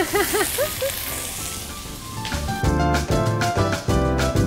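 Diced vegetables sizzling in olive oil in a frying pan, with a voice briefly humming a tune over it at the start. A bit over two seconds in, upbeat background music with a steady beat comes in and covers the sizzle.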